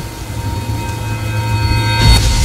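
Intro sound effects: a rain-like storm hiss under a droning hum of several held tones, growing louder toward the end.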